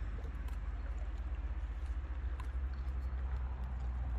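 Small lake waves lapping and gurgling against shoreline rocks, with scattered little splashes and clicks, over a steady low rumble.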